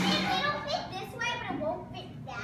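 Children's voices talking and chattering.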